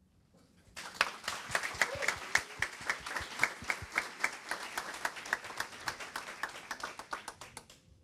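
Applause in a small hall: a group of people clapping, starting about a second in and thinning out near the end.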